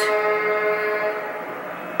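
A woman's long, held hesitation sound, a drawn-out "ummm" on one steady pitch, fading out about three-quarters of the way in.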